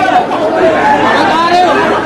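Speech only: a man speaking continuously in a loud, even voice, giving a speech.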